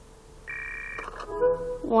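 Telephone ringing on a TV cartoon playing in the room: one short electronic ring about half a second in, then a few steady musical notes.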